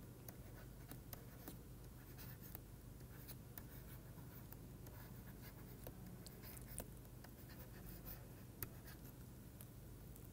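Faint taps and scratches of a stylus writing on a pen tablet: scattered small irregular clicks over a low steady hum.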